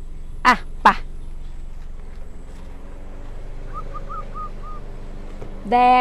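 A bird calls faintly in a quick run of five short notes, about four a second, a little under four seconds in, over steady outdoor background noise.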